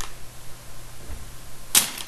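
A pause between sentences with a faint steady hiss, broken near the end by a short sharp intake of breath.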